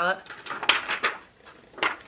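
Handling noise from unpacking a cosmetics box: the packaging and an eyeshadow palette case rustle and knock about half a second in, and there is one brief sharp click near the end.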